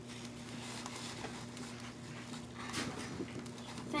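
Faint rustling of a paper tissue and light handling clicks as marker ink is wiped off, over a steady low hum.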